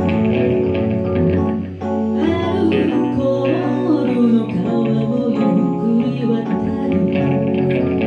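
Live band music: a woman sings into a microphone over electric guitar and keyboard.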